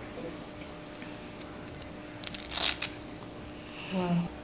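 A short burst of rustling, tearing noise, about half a second long, a little past halfway, with a few sharp clicks in it, over a quiet room with a faint steady hum.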